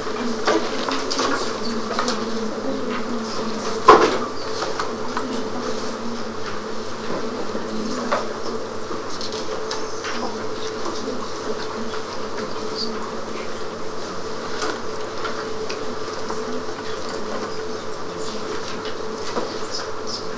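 Classroom room tone: a steady electrical buzz with scattered small clicks and rustles, and one sharp knock about four seconds in.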